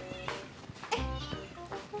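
A Bengal cat meowing over quiet background music.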